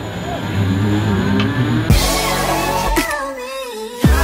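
Background music with a wavering melody that comes in fully about halfway through and carries on.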